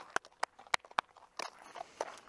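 Hooves of a horse being led at a walk on gravel, a run of sharp separate steps, about five in the first second and a half, likely mixed with the handler's footsteps.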